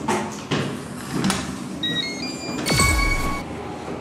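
Electronic door lock being opened: a few clicks, then a short run of four beeps stepping up in pitch, then a loud burst of latch-and-door noise with a ringing tone as the lock releases and the door swings open.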